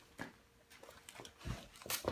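Gift-wrapping paper crinkling and tearing in short crackles as a small child pulls at a wrapped present, with a low thump about one and a half seconds in and a sharper rip near the end.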